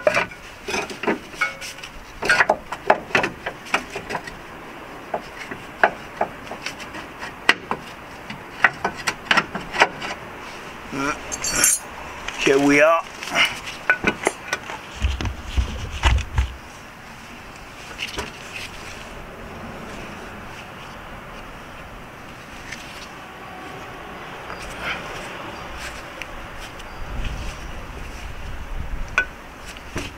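Hand tools and steel suspension parts clinking and knocking as a car's front lower control arm is worked loose: a quick run of sharp metallic taps and clanks in the first half. After that, only quieter handling noises and low rumbles remain.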